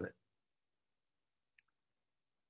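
Near silence after a spoken word ends, broken once by a single faint, short click about one and a half seconds in.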